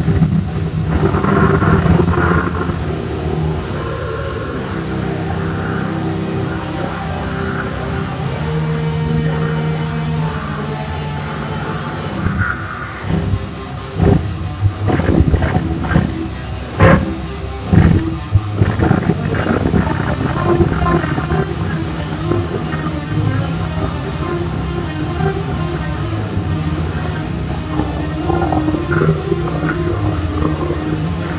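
Heavy metal music with an electric guitar playing a lead solo, with a run of sharp, loud hits about halfway through.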